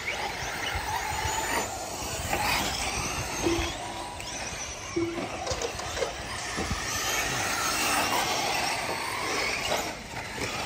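Radio-controlled truggies racing on a dirt track, their motors whining up and down in pitch as they speed up and slow down.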